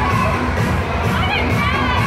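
Many children shouting and screaming at once in a large indoor hall, a loud, steady din over background music, with one high child's squeal about a second in.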